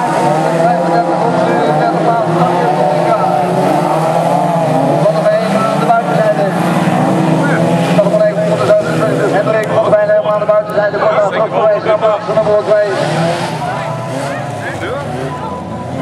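Several autocross cars racing on a dirt track, their engines revving up and down together as they go through the bends. The engine noise eases off over the last few seconds.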